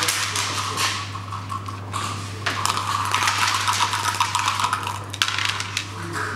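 Dice rattled in a clear plastic dice cup and thrown onto a wooden backgammon board, clattering on the wood with a sharp click near the end.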